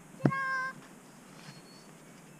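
A sharp knock, then a short animal cry: one steady high note about half a second long.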